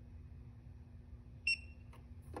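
A single short electronic beep from a STEMCO BAT RF handheld programmer about one and a half seconds in, as it finishes programming a DataTrac Pro hubodometer; a faint steady hum underneath.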